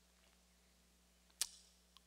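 Near silence over a faint, steady low hum, broken about one and a half seconds in by a single short, sharp click.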